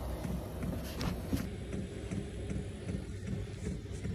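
Maxspeedingrods diesel heater running in a van: a steady low rumble with a soft regular pulse about three times a second. A couple of brief knocks from the camera being handled in the first half.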